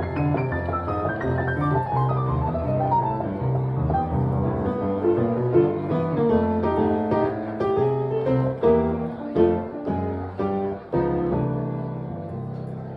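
Solo piano playing: a falling run of notes over held bass notes, then a series of struck chords, the last one, about a second before the end, left ringing and fading.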